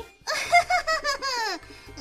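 A woman's high-pitched gloating laugh, a run of short pulses falling in pitch for about a second, over background music.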